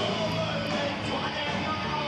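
A rock band playing live, with guitar among the instruments.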